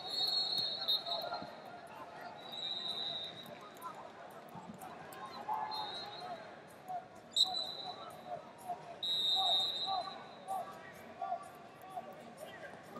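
Tournament arena din: referees' whistles blowing five times over about ten seconds, short high blasts, over indistinct shouting from coaches and spectators, with scattered thuds of wrestlers on the mats.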